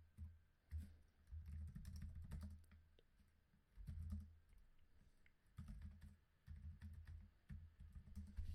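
Faint, irregular clicking of computer keyboard keys typing terminal commands, in short clusters with pauses, each cluster carrying dull low thumps.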